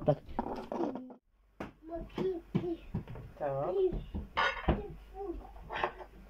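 Mostly soft, scattered voices, with a short complete silence about a second in.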